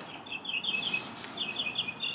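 Paper pages rustling briefly as loose printed sheets are shuffled, over a background of high chirping in quick, evenly spaced runs.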